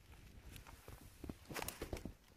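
Footsteps close to the microphone: a few irregular steps with a quick cluster of louder ones near the end.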